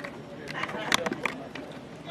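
Faint, distant voices of players calling out across a field, with a few sharp clicks.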